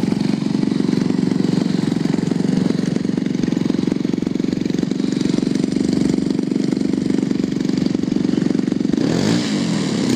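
DLE-111 twin-cylinder two-stroke gas engine of a 100cc RC Yak running steadily on the ground with a fast, even firing beat. About nine seconds in, the sound wavers briefly.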